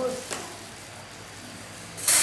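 A single light knock of a knife on a wooden chopping board about a third of a second in, while a fish is being cut, with a faint steady hiss for the rest of the time.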